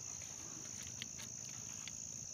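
Crickets chirping in a steady, unbroken high trill, with a couple of faint clicks about a second in and near the end.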